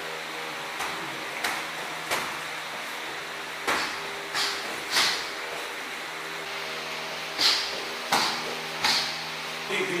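Sparring strikes, gloved punches and kicks landing: about nine short, sharp hits in quick combinations of two or three, over a steady hum.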